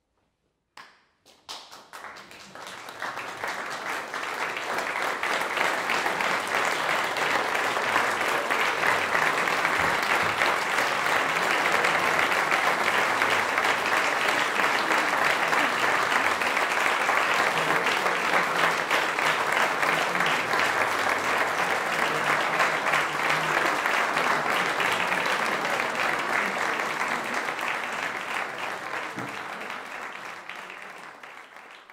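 Audience applause breaks out about a second in, swells over the next few seconds into steady clapping, and begins to thin near the end.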